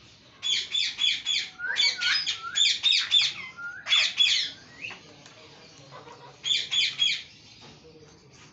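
Caged green parakeet squawking: harsh calls in quick runs of two to six, four runs in all, with a pause of about two seconds before the last.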